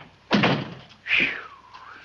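A wooden front door shut firmly with a single thunk, about a third of a second in. Just under a second later comes a brief voice sound whose pitch falls and then rises again.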